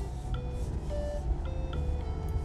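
Steady low drone of a Mazda ND Roadster's 1.5-litre four-cylinder engine and tyres heard inside the cabin while driving up a snowy road, with a few short, separate notes of soft background music over it.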